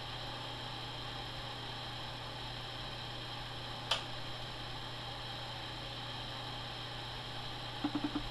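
Steady low electrical hum over a faint hiss, with a single sharp click about four seconds in.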